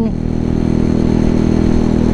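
2003 Baimo Renegade V125 motorcycle engine running steadily at a constant cruising speed, heard from the bike.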